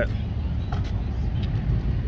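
Steady low outdoor rumble, of the kind made by traffic and vehicles around a roadside store, with a faint click about three-quarters of a second in.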